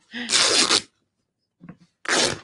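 A strip of fabric torn by hand along the grain, one quick rip lasting under a second near the start.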